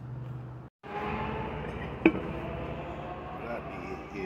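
A brief gap of silence, then handling noise at a bench vise with one sharp metallic clink about two seconds in, as the steel-rimmed wheel of a zero-turn mower knocks against the cast-iron vise.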